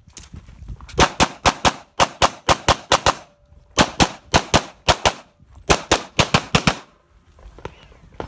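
Pistol fired rapidly in three quick strings of about twenty shots in all, many in fast pairs, with short breaks between strings as the shooter moves to new positions; the shooting stops about seven seconds in.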